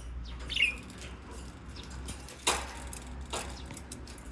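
Monk parakeet giving short, harsh, raspy contact calls to summon its owner: a brief chirp about half a second in, then a sharp, loud call about two and a half seconds in and a smaller one shortly after.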